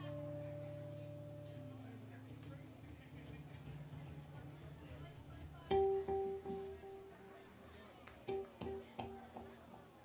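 Electric guitar being tuned through an amplifier: a few held low notes ring and fade, then about six seconds in one note is picked over and over, about four times a second, in two short runs.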